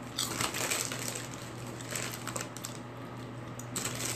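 Handling noise from fingers tapping and brushing on the phone that is recording, close to its microphone. A rustling burst comes just after the start and another near the end, with a few sharp clicks in between, over a steady low hum.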